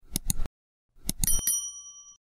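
Subscribe-button animation sound effect: two quick mouse clicks, then about a second in another few clicks and a bright bell ding that rings on briefly and fades.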